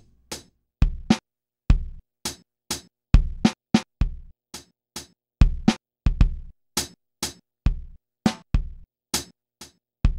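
A drum beat played on a homemade three-by-three pad drum machine struck with sticks. Each hit triggers a sampled drum through speakers: kick drum, toms, snares, hi-hats and cymbals. The hits come about two to three a second, deep kick hits mixed with bright snare and cymbal hits.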